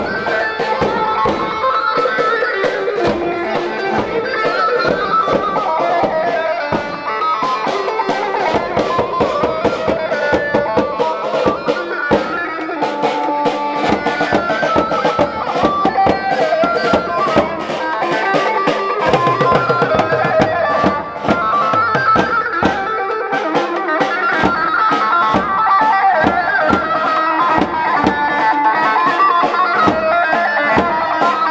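Live wedding band playing Kurdish halay dance music: a drum kit keeps a steady, dense beat under a shifting lead melody.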